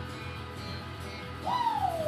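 Band playing quietly, with instruments holding steady notes. About one and a half seconds in, a loud high-pitched sound leaps up and slides slowly down in pitch.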